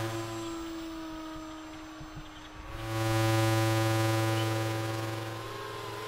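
Electric motor and propeller of an FPV flying wing buzzing overhead: a steady pitched hum that dips, swells loud about three seconds in as the aircraft passes, then slowly fades.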